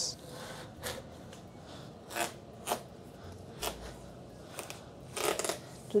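A large kitchen knife cutting into the rind of a whole watermelon: several short, irregularly spaced cutting strokes, with a quicker run of them near the end.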